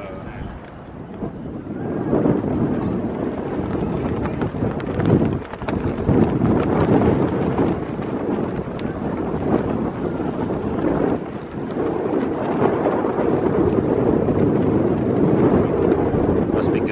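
Wind buffeting the microphone: a loud, gusting rumble that picks up about two seconds in and keeps surging and dipping.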